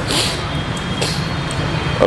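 Steady low rumble with an even hiss of background noise, and a brief high hiss just after the start.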